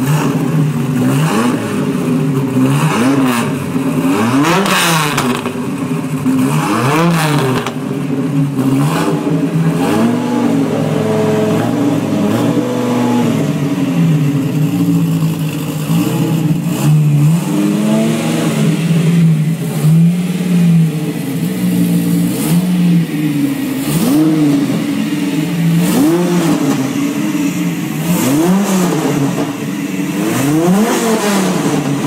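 Jensen Viperceptor's V10 engine idling and revved again and again with throttle blips, the pitch rising and falling each time; most blips are short, a few are held for a second or two.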